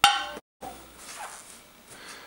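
A metal canning lid on a cooling glass jar popping with one sharp metallic ping at the very start, the sign that the jar has sealed. Faint room noise follows.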